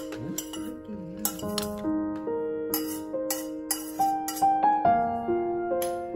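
Gentle piano music with kitchenware clinking against ceramic dinner plates, a run of sharp clinks in the middle as vegetables are served.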